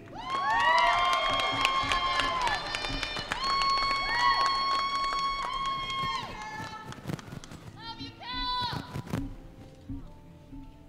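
A song with singing playing, its melody sliding up and down between long held notes and fading somewhat after about seven seconds.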